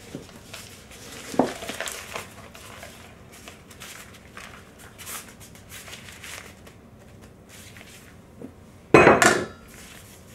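Soft rustling of a piping bag of cannoli filling being gathered and twisted closed, with a sharp knock about a second and a half in. Near the end comes a brief, much louder clatter of kitchenware.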